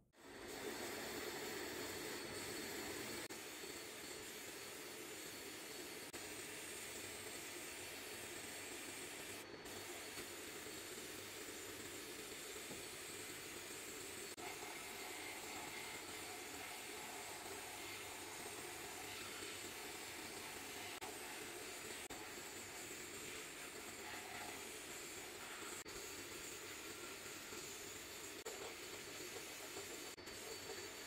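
Sandblast gun in a benchtop blast cabinet blowing abrasive media onto the metal parts of an old oil lamp to strip rust and old finish. It makes a steady hiss of compressed air and grit that starts abruptly and holds even throughout.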